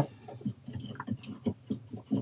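Light clicks and knocks as a coax patch cord's metal F connector is handled and lined up on a patch-panel port, several small taps spread through the two seconds.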